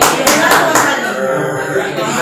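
Hand claps, a few sharp strikes about four a second in the first second, over speech.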